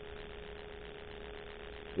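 Faint steady hum with one thin, constant mid-pitched tone, and no other sound.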